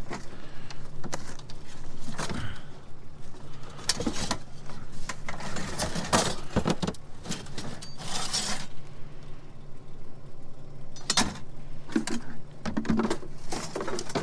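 Loose bits of scrap steel clinking and clattering in a plastic tote as gloved hands rummage through it, in irregular knocks throughout, with a steady low hum underneath.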